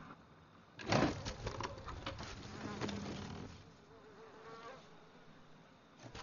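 Wooden boards and debris clattering and knocking as they are pulled aside by hand, loudest about a second in. A brief, faint, wavering chirp follows about three seconds in.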